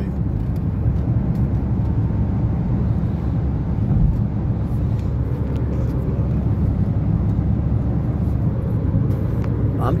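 A car cruising at highway speed, heard inside its cabin: a steady, low rumble of road, tyre and engine noise.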